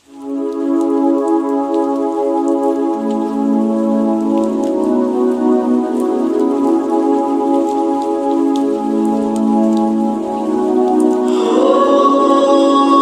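Slowed-down, reverb-heavy song intro: long held chords that change every few seconds, laid over a steady rain sound effect with scattered raindrop ticks. A brighter, fuller layer comes in near the end.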